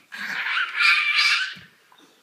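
A child's high-pitched, strained squeal in two parts, a short one and then a longer one, lasting about a second and a half in all, as he works at pulling out a loose front tooth.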